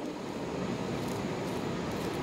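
Steady outdoor background noise, an even wash with no distinct events.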